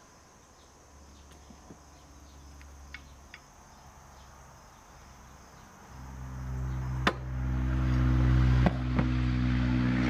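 A steady low engine drone fades in about six seconds in and holds, from a motor that is not the dismantled tractor engine. A sharp click sounds about a second after it begins, and a fainter one shortly after that. Before it there are only a few faint ticks over a quiet background.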